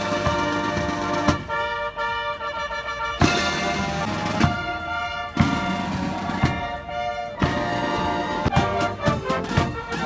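Military marching band playing: brass instruments over bass and side drums, with strong drum beats about once a second.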